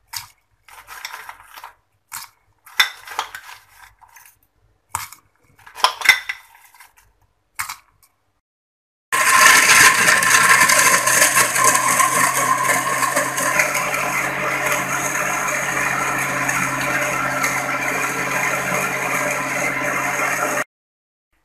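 A metal spoon clinking and scraping in a glass blender jar in short, scattered strokes. About nine seconds in, after a brief silence, a Westpoint juicer-blender's motor starts abruptly and runs loud and steady, blending milk and mango into a shake.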